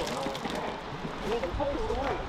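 Voices talking in the background, faint and indistinct, over a steady outdoor hiss.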